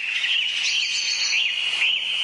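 Birds chirping in short repeated calls over a steady high-pitched hum.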